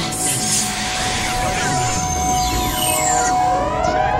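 Electronic sci-fi sound effects: a hissing whoosh at the start, steady electronic tones held through, then repeated rising alarm-like whoops beginning near the end.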